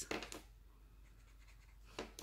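Faint scratching of a felt-tip marker on paper, then almost quiet, with a short click at the very end as a marker is handled.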